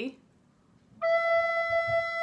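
Descant recorder playing a single held low E: one steady, clear note that starts about a second in.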